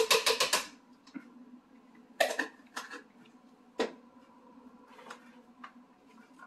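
Chopped red bell pepper pieces tipped from a small plastic container into a plastic blender jar, a quick run of clicks and taps, followed by three separate knocks spread over the next few seconds.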